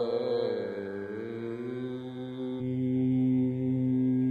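Closing phrase of a Carnatic-style Kannada devotional song: a male voice glides through an ornamented phrase into a long held note over a steady drone. The drone swells and grows louder about two and a half seconds in.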